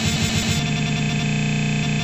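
Rock band music with electric guitar that, about half a second in, freezes into a steady buzzing stutter: a tiny slice of the audio repeating over and over, the sound of a simulated computer crash.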